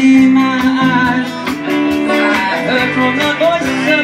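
Live rock band playing: strummed acoustic guitars and electric guitar over bass and drums with a steady cymbal beat, and a melody line gliding in pitch above the chords.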